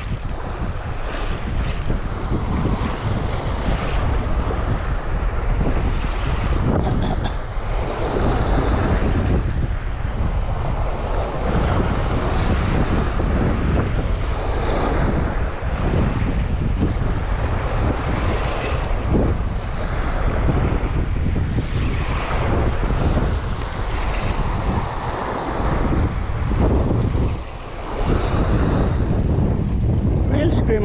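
Wind buffeting the microphone over small waves washing up on a sandy beach, the surf rising and falling in slow surges.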